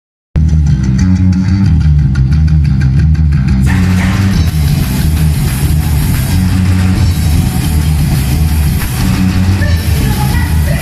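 Punk rock band playing live and loud. At first it is mostly bass guitar and drums, with a regular cymbal ticking on top. About three and a half seconds in, electric guitar and cymbals come in and fill out the sound.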